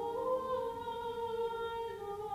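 Unaccompanied Orthodox church chant: long held sung notes that step slowly up and down in pitch.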